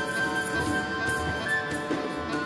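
Live folk ensemble music: Cornish bagpipes sound a held melody that steps in pitch over their steady drone, with hand-drum strokes from a frame drum and a Balinese kendang.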